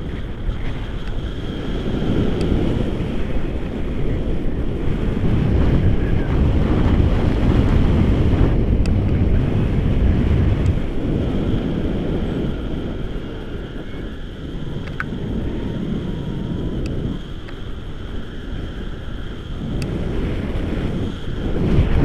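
Airflow of a paraglider in flight buffeting an action camera's microphone: a steady low rush that swells and eases in gusts, strongest about a third of the way in.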